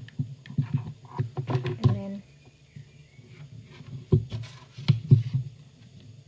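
A few sharp knocks and clatter about four to five seconds in: tools being handled on a table, as the hot glue gun is put down and the silicone spatula is taken up.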